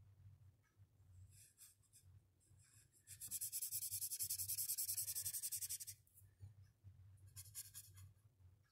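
Blue felt-tip marker scratching on paper in rapid back-and-forth hatching strokes. There is a short burst of strokes, then about three seconds of steady fast scribbling in the middle, the loudest part, and another short burst near the end.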